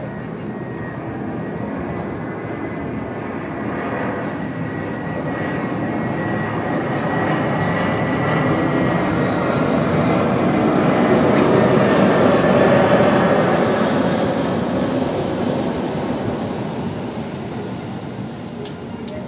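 Passenger jet airliner passing overhead: its engine noise swells to a peak about two-thirds of the way through and then fades as it moves away, with a faint high whine above the rumble.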